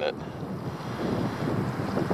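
Wind buffeting the microphone: a steady, fluctuating rumbling rush that grows a little louder after about a second.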